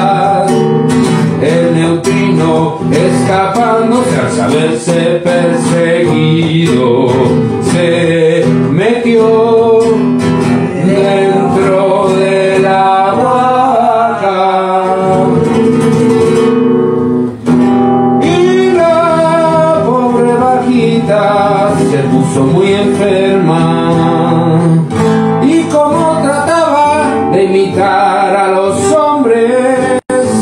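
A man singing to his own acoustic guitar, strumming and picking chords, with a brief break a little past halfway.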